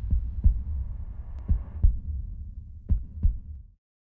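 Sound-design heartbeat under a logo sting: three slow double thumps over a low rumble that fades out, going silent near the end.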